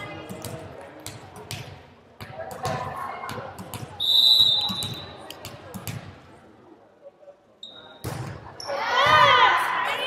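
Gym sounds during a volleyball match: a volleyball bouncing on the hardwood floor in a series of sharp knocks over a low crowd murmur. A referee's whistle sounds once about four seconds in and briefly again just before eight seconds. The serve follows, and players' voices call out loudly near the end.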